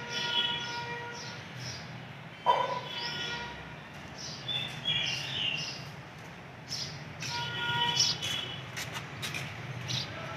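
Small birds chirping in short, irregular high calls, with one sharper falling call about two and a half seconds in. Held pitched notes with overtones sound near the start and again about seven seconds in.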